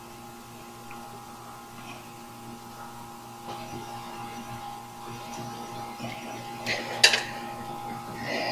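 Small clicks and handling noises as a sensor is worked loose and pulled off an engine's cylinder head by hand, with a sharper click or snap about seven seconds in. Under it runs a steady electrical hum.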